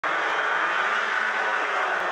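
Steady racing-engine roar, a sound effect, that starts suddenly and holds at an even level.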